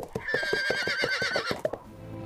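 A horse whinnying once, a long quavering call of about a second and a half, over the irregular clopping of hooves.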